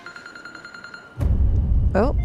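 A mobile phone's generic ringtone in a TV drama soundtrack: a steady high tone that stops about a second in, as a loud deep low sound comes in and holds.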